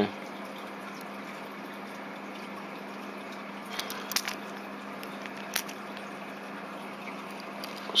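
Steady low room hum, with a few faint short clicks around four seconds in and again a little later as metal watches and their link bracelets are handled.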